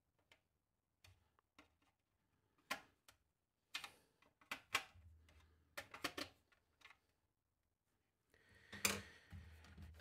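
Small screwdriver driving screws back into a plastic battery-charger case: scattered light clicks and ticks, with a louder knock and a brief rustle of handling near the end.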